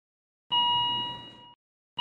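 Two electronic heart-monitor beeps, as a sound effect: one about half a second in that fades away over about a second, and a second one starting just before the end.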